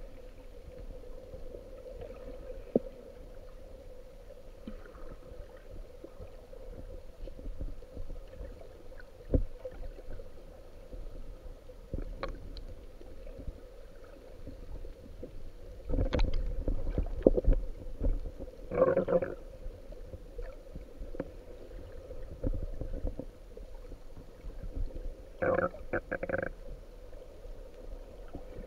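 Muffled sound picked up by a camera held underwater: a steady faint hum over a low rumble of water, with scattered clicks and knocks. A louder rush of water noise comes about sixteen seconds in, and short muffled voice sounds come near nineteen and twenty-six seconds.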